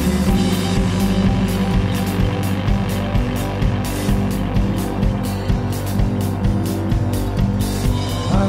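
Band music with a steady drum beat over sustained low bass notes and no singing.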